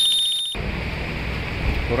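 An edited-in meme sound effect: a shrill, rapidly pulsing high tone that cuts off abruptly about half a second in. After it comes a steady low rush of wind and road noise on the microphone from the motorbike ride.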